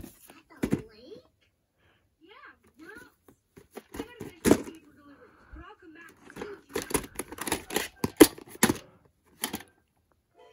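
Plastic clamshell VHS case being handled and opened and the cassette taken out: a run of sharp plastic clicks and knocks, sparse at first and coming thick and fast in the second half.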